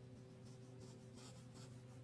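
Faint scratchy strokes of a crayon being rubbed on paper while colouring, about four short strokes in the second half, over a steady low hum.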